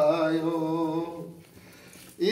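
A male voice chanting a Sanskrit havan mantra, holding one long drawn-out note that fades away a little past a second in, leaving a short pause.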